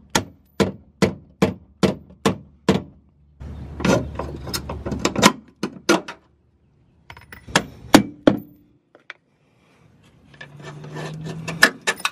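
Hammer blows on metal, about two and a half a second in runs with short pauses between, knocking bolts out of a transmission crossmember.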